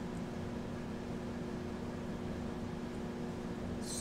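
Steady room hum and hiss, with a constant low drone like a fan or appliance running.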